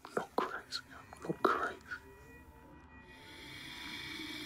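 Breathy whispered voice sounds with short gasps and a soft 'oh' about a second in. After that, a steady hiss of background ambience slowly grows louder.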